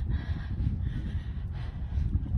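Wind buffeting a phone's microphone outdoors: a low, irregular rumble.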